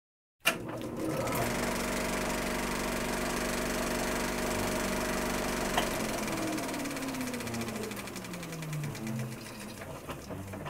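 Old film projector running: a fast, steady mechanical clatter over a hum, starting with a click about half a second in. In the second half a tone slides slowly downward and the sound eases off.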